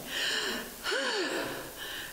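A woman's heavy, audible sigh into a lectern microphone, acting out a child's weary sigh: two breathy sounds, the second voiced, rising then falling in pitch.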